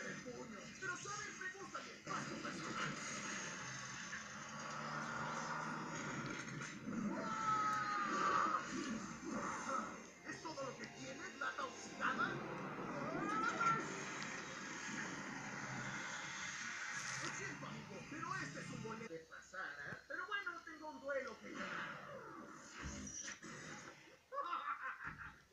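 Cartoon soundtrack playing from a television set: voices over background music, heard through the TV's speaker.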